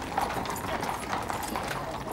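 Hooves of several horses clip-clopping irregularly on the parade ground.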